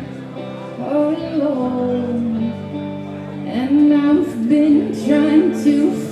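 Live indie pop song: a woman singing over electric guitar. The vocal line comes in about a second in, pauses briefly, and returns for the second half.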